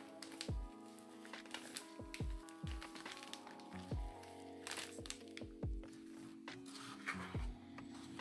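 Background music with held notes and a low plucked bass, over the faint crinkle of a plastic bag being squeezed as sand is poured from it.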